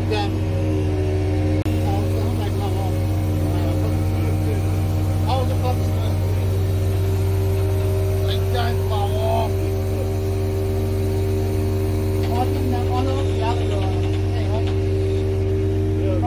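Heavy lifting machine's engine running at a steady, even speed while it holds a concrete septic tank on chains and lowers it into the pit.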